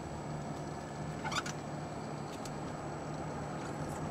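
Steady low hum and rumble of a car's engine and tyres, heard from inside the cabin while driving slowly. A brief sharp click comes about a second and a half in.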